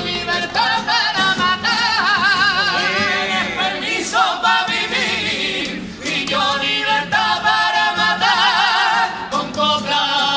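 A small group of men singing a Cádiz carnival comparsa in harmony, their voices held in long notes with wide vibrato, to a Spanish guitar. The singing breaks off briefly about six seconds in, then resumes.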